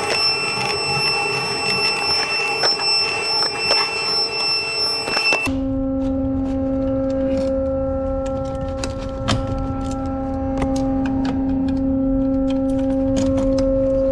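Steady machinery hum with several held tones, changing abruptly to a lower-pitched hum about five and a half seconds in. Over the lower hum come small irregular clicks and taps of a screwdriver working the terminal screws of a relay in an electrical cabinet.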